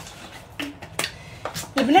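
Short sharp clicks and a brief gulp from drinking out of a plastic water bottle, three of them spread over the first second and a half. A woman's voice starts near the end.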